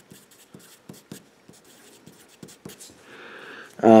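Handwriting on paper: a run of short, light taps and scratches as small letters and a reaction arrow are written, with a slightly longer soft scratch near the end.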